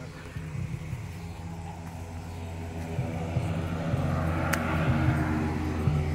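A motor vehicle's engine running steadily and getting louder as it approaches. One sharp click sounds about two-thirds of the way in.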